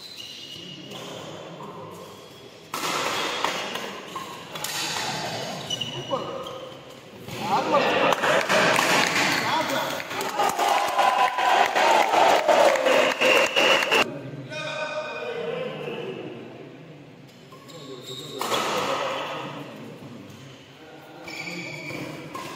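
Badminton doubles play in a large hall: racket strikes on the shuttlecock and players' shoes on the court. After the point, spectators shout and clap loudly for several seconds, then break off abruptly.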